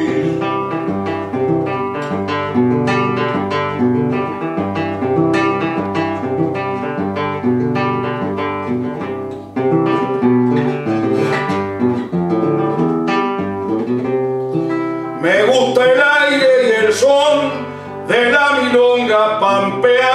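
Nylon-string classical guitar playing a milonga: a plucked melody over a steady bass line. About three-quarters of the way through, a man's voice comes in over the guitar.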